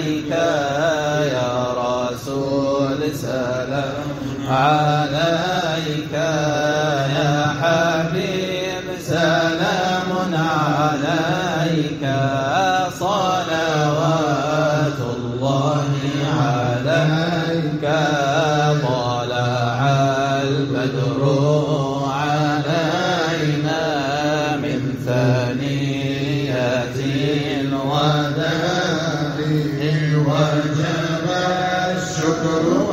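Men's voices in Sufi devotional chanting: a low sustained group chant with an ornamented, wavering melody sung above it, without clear words.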